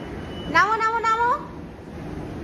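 A high-pitched voice giving one drawn-out call that rises in pitch, about half a second in and lasting just under a second.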